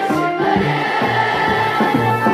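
A large group of children singing a song in unison over accompanying music with a steady beat.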